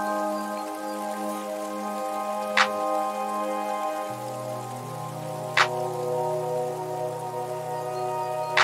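Background music of sustained synth chords that change about four seconds in, with a sharp percussive hit twice, about three seconds apart.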